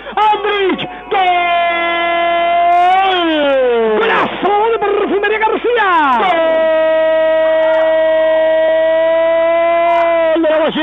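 A radio football commentator's drawn-out goal cry, 'gooool', held on one high note for a couple of seconds, falling away and breaking up about four seconds in, then held again on a long steady note. It announces a goal.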